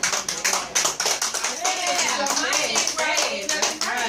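Small audience applauding with dense, irregular hand claps, with voices calling out over the clapping.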